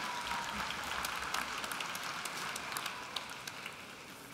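Audience applauding, dying down over a few seconds.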